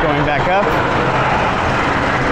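Single-rail steel roller coaster train running along its track, a steady loud rushing noise, with a brief voice or scream near the start.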